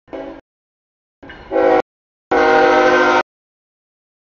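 Freight locomotive air horn sounding a chord in several blasts as the train reaches the grade crossing, a warning to the crossing. The longest and loudest blast comes about two seconds in and lasts about a second, after a shorter one that swells up.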